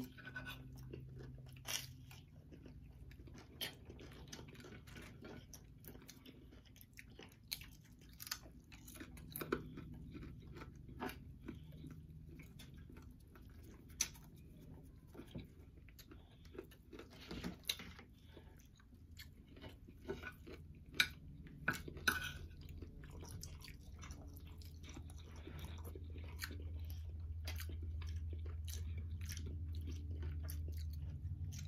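Faint, close-up chewing and crunching of a breakfast of toast and bacon, with irregular short clicks and crunches throughout. A low hum swells in the last several seconds.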